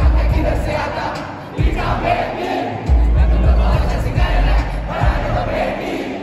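Dense concert crowd shouting along to a live rap track with heavy bass, heard from inside the crowd. The bass drops out about one and a half seconds in and comes back near the three-second mark.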